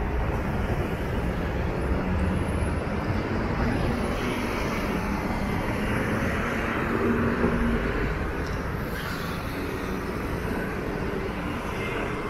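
Traffic on a busy multi-lane city street: cars, buses and motor scooters driving past, a steady traffic noise with an engine passing close a little after the middle.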